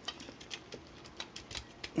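Light, irregular plastic clicks and clacks from a Mastermind Creations R-02 Talon robot figure as its wing pack is worked loose and unclipped from the body.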